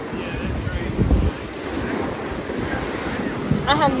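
Ocean surf breaking and washing over jetty rocks, with wind buffeting the microphone. A man's voice starts near the end.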